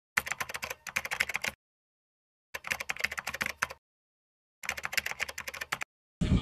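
Typing sound effect: rapid keystroke clatter in three bursts of about a second each, separated by silence.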